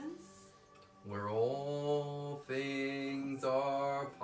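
A low voice intoning long, chant-like held tones. It comes in after about a second of quiet, slides up briefly at the start, and is broken twice by short pauses.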